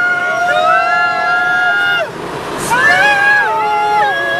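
Singing in long, held notes inside a moving van, with the van's road noise underneath. About halfway through the singing breaks off briefly, then slides up into the next notes.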